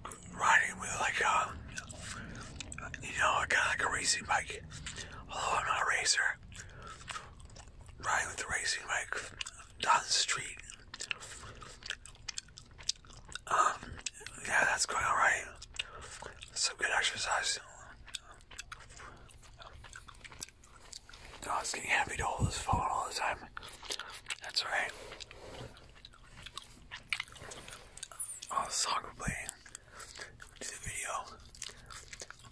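Gum chewed close to the microphone, with many short wet clicks and smacks throughout, between spells of soft whispered talk.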